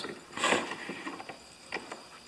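Carpenter's bench vice with wooden jaw faces being handled: a short knock about half a second in, then a lighter click near the end.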